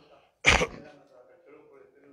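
A man clears his throat once, sharply and loudly, about half a second in.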